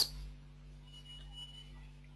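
A quiet pause holding only a faint steady low hum, with a faint thin high-pitched tone lasting about a second in the middle.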